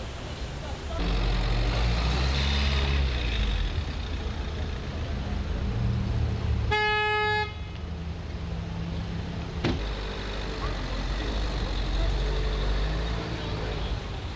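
Street traffic with a vehicle engine running close by, and a single car horn honk of under a second about seven seconds in. Faint voices are in the background.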